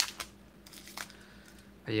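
Wax-paper wrapper of a trading-card pack crinkling as it is torn open: one sharp crackle at the start, then a few fainter crinkles.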